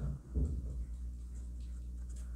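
Quiet room tone with a steady low hum and a brief soft bump shortly after the start.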